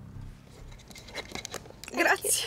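Short sniffs and mouth clicks from a person close to tears, then a louder sharp breath near the end.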